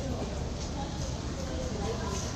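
Wind buffeting the microphone: a steady low rumble and hiss, with faint voices in the background.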